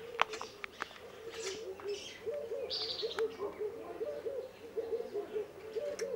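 A bird calling in short, low notes repeated a few times a second, with a higher chirp about three seconds in. A few light clicks of tableware come early on.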